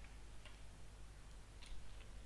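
A few faint clicks of a computer mouse over a low, steady room hum.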